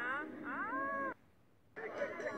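A high voice glides down, then slides up into a held note; just past a second in, the sound cuts off suddenly for about half a second before it returns.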